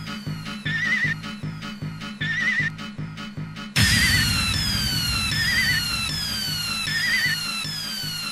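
Hard house dance mix: a steady four-on-the-floor kick and bass under repeating falling synth sweeps, with a short warbling synth figure about every second and a half. Nearly four seconds in, the kick drops out into a louder, noisier break while the synth figures carry on.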